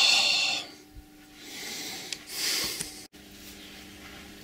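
A man's breathy laugh trailing off in the first half-second, then a couple of soft breathy hisses. After an abrupt cut about three seconds in, a faint steady low hum from the Colchester lathe.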